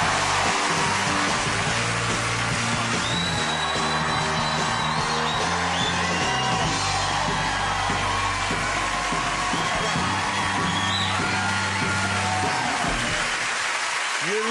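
Studio walk-on music with a moving bass line under a television studio audience cheering, whooping and applauding. The music stops shortly before the end while the cheering carries on.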